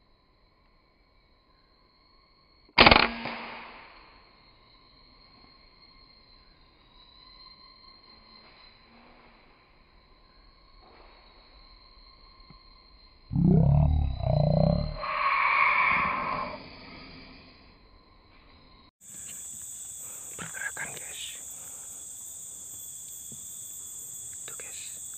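A single rifle shot about three seconds in, sharp and loud with a short echoing tail. Later comes a loud voice-like call lasting a few seconds, and near the end a steady high insect drone starts abruptly.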